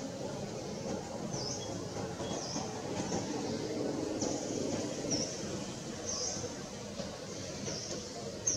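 Birds chirping outdoors: short, high chirps repeating about once a second, over a steady low background rumble.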